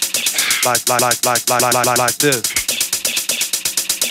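Early Chicago house track: a drum machine ticking rapidly, about eight strokes a second, under a chopped vocal sample stuttering the word "like" over and over.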